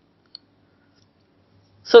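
Near silence broken by one brief, faint click about a third of a second in; a man's voice starts speaking right at the end.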